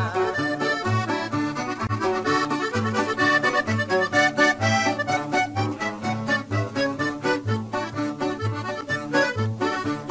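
Norteño instrumental break: a button accordion plays a quick melody over a strummed bajo sexto and a bouncing bass line, in a steady rhythm.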